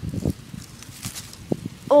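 Irregular rustling and soft thumps from a freshly landed peacock bass being grabbed by hand on grass, with one sharper click about one and a half seconds in.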